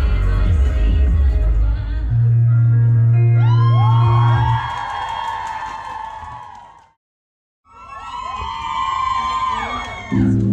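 A music track playing over the club's PA, ending on a long low held note. An audience in the hall whoops and cheers over it, several voices rising and then holding. The sound cuts out completely for under a second, then the whooping picks up again, and a new song with guitar and bass starts right at the end.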